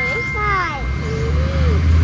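A few steady electronic chime tones ring on and fade out within the first second. Under them runs a low rumble of passing traffic that swells in the second half, with faint voices.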